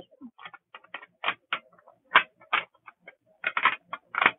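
Small plastic drill containers clicking and tapping against a plastic storage case as they are handled and lifted out, an irregular run of light clicks.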